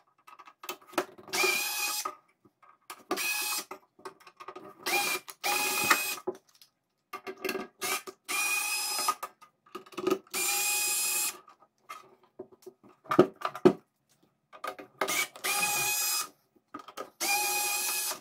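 Small cordless electric screwdriver whirring in repeated short runs of about a second each, backing out the steel case screws of an inverter welder. Small clicks of screws and handling fall in the gaps between the runs.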